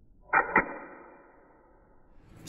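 Double-action automatic folding knife firing its blade open: a sudden snap and a sharp click as the blade locks, then a short metallic ring that fades over about a second.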